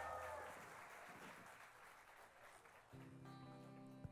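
Faint live band music: the last chord of the song dies away, and about three seconds in a quiet held chord begins.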